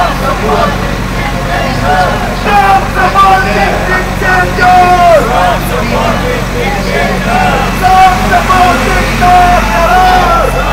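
A man chanting protest slogans through a megaphone, his voice loud and harsh, with several long drawn-out syllables.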